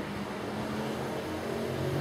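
A steady low hum with a faint even hiss of background noise, with no speech.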